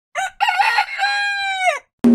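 A rooster crowing once: a short clipped note, then a longer call that ends in a held note falling in pitch.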